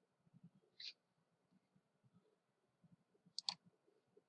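Near silence broken by faint computer mouse clicks: a single click a little under a second in, then a louder double click about three and a half seconds in, as the presenter clicks to advance the slide animation.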